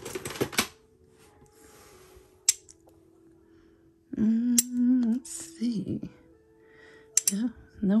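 Metal costume jewelry clinking and jingling as pieces are picked up and handled, loudest at the very start, with a single sharp clink about two and a half seconds in and a few more clinks near the end.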